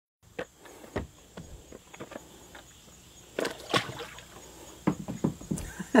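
Scattered knocks and clunks of a Henry U.S. Survival Rifle being handled against a plastic kayak and set in the water to float, with a louder cluster of knocks about three and a half seconds in. A short laugh right at the end.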